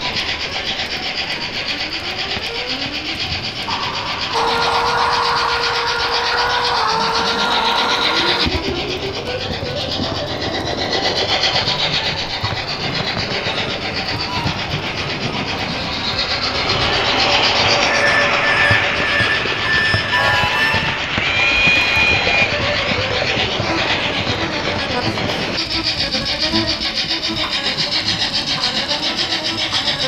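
Trains running on rails, a continuous rumbling track noise with whines that rise and fall in pitch and some held steady tones, growing louder partway through.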